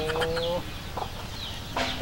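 Chicken clucking: a drawn-out call in the first half second, then only faint, brief sounds.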